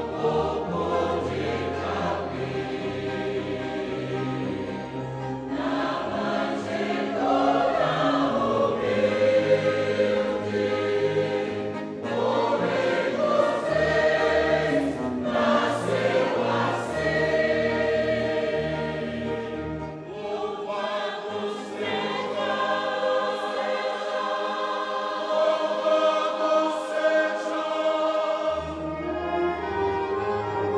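A choir singing a hymn in long held notes over a sustained low instrumental accompaniment.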